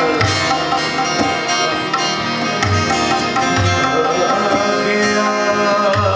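Live ghazal accompaniment: harmonium playing sustained chords with tabla and a plucked guitar, with a few deep strokes of the tabla's bass drum.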